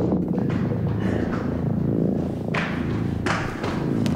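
Horror-film sound design: a steady, low, ominous drone with two heavy thuds about a second apart near the end.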